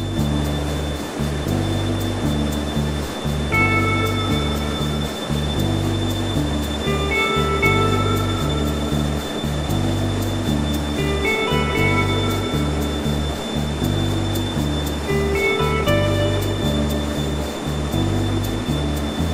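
Background music: a steady low bass pattern changing note about twice a second, with a higher melodic phrase returning every few seconds over a soft, even wash.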